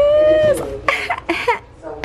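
A woman's long, high-pitched excited vocal note, rising in pitch and breaking off about half a second in, followed by four short breathy bursts of voice.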